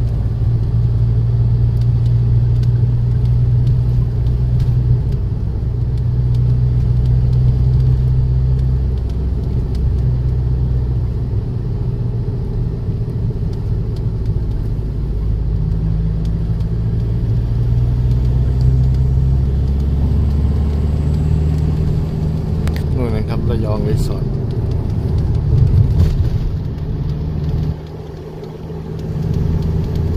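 Car interior noise while driving: a steady low engine and road rumble inside the cabin, its pitch stepping up and down with speed. It drops away briefly about two seconds before the end, then comes back.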